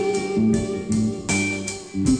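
Rock band playing an instrumental passage between sung lines: guitar and bass notes over regular drum hits.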